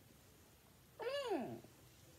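A single meow about half a second long, coming in about halfway through. Its pitch rises briefly, then falls steeply.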